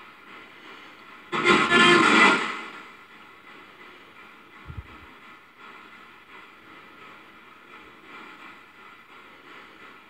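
Ghost-hunting spirit box sweeping radio stations: a loud burst of garbled radio sound a little over a second in, lasting about a second and a half, then a steady low hiss of static. A faint low bump comes near the middle.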